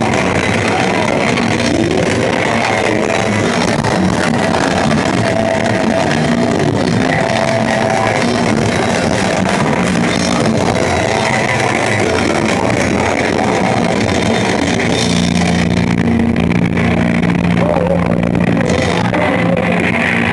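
Metal band playing loud live: distorted electric guitars, bass and drums, dense and steady throughout. A low note is held through the last few seconds.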